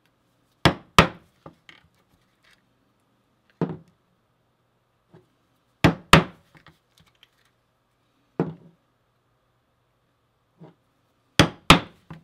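Mallet strikes on a four-prong 5 mm stitching chisel, driving stitch holes through veg-tan leather on a work board. The strikes are sharp and come mostly in quick pairs, about a third of a second apart, every few seconds. A few lighter single taps fall between them.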